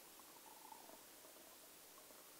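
Near silence: a faint steady hiss, with a few faint short tones in the first second.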